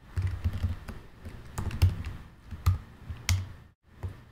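Typing on a computer keyboard: irregular keystrokes with dull thuds, a few louder presses in the second half, and a brief pause just before the end.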